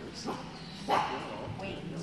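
A dog barks once, short and sharp, about a second in, over low murmured talk. The big hall gives the bark a short echo.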